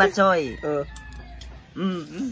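A rooster crowing, mixed with a man's voice.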